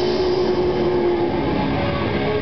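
A grindcore band playing loud, with heavily distorted electric guitar and bass over drums in a dense, unbroken wall of sound. A single held note rings over it for the first second and a half.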